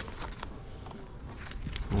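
A few light knocks and scrapes of a wooden beehive frame being lowered into a honey super, over a faint outdoor background.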